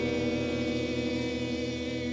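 Live band holding a sustained closing chord of steady tones, with a low part pulsing about five times a second, slowly fading.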